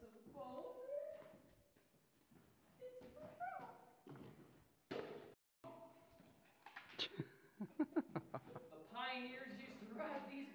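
A man's loud wordless vocal calls inside a mine tunnel, a few drawn-out gliding shouts. After a cut, a quick run of short bursts like laughter, then more voice.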